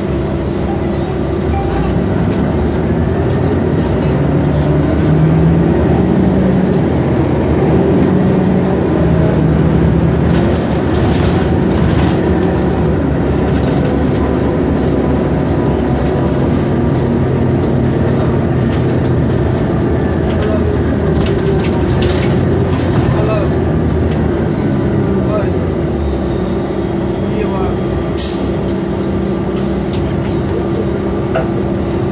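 Interior of a 2002 New Flyer D40LF diesel bus under way: its Detroit Diesel Series 50 engine and Allison automatic transmission running steadily, rising in pitch as the bus accelerates about four seconds in, then holding. Occasional knocks and rattles sound over the drone.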